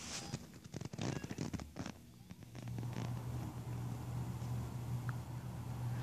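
Dell Latitude D630 laptop powering on: a few short clicks and knocks in the first two seconds, then a steady low hum starts about two and a half seconds in as the machine spins up.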